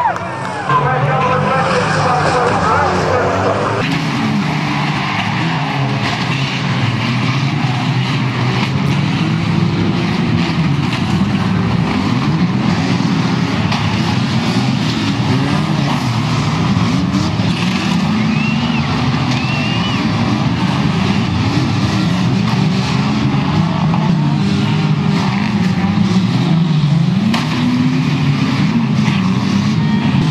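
Several banger-racing cars' engines revving up and down together as the cars push and ram each other, with scattered knocks of bodywork colliding.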